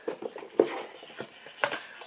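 A cardboard gift box being handled and opened: scattered light clicks and rustling, with a couple of sharper ticks about halfway through and near the end.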